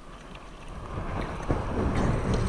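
Wind buffeting the microphone with a low rumble, growing louder in the second half, and one sharp knock about one and a half seconds in.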